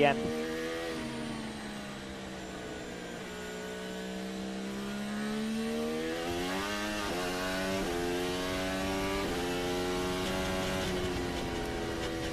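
Williams FW44 Formula 1 car's Mercedes 1.6-litre turbo V6 heard onboard. It slows off the throttle at first, then pulls up through the gears, its pitch climbing with a sharp drop at each of several quick upshifts before holding steady near the end.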